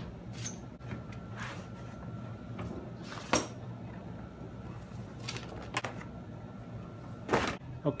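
Plastic storage tub full of liquid being lifted and set down inside a larger plastic tub: a handful of scattered knocks and bumps of plastic, the loudest about three seconds in, over a low steady hum.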